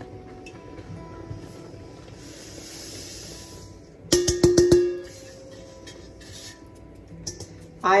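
Sugar pouring out of a large stainless steel mixing bowl with a soft hiss, then several quick metallic knocks as the bowl is rapped against the jam pot, ringing briefly, about four seconds in.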